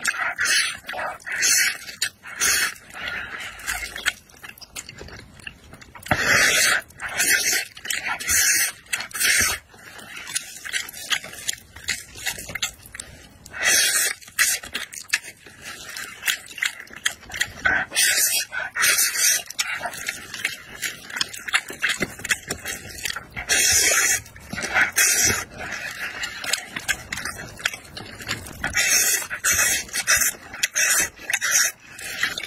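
A person slurping spicy, sauce-coated noodles off chopsticks, with wet chewing between. The loud, hissing slurps come in clusters every few seconds.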